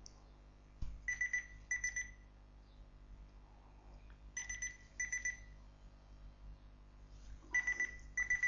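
Countdown timer going off at the end of its five minutes: a high electronic beep in pairs of quick bursts, each pair repeating about every three seconds, three times in all.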